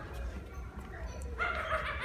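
A short, high-pitched animal-like yelp about a second and a half in, over a steady low hum.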